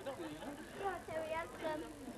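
Indistinct voices of several people talking and laughing, with no clear words.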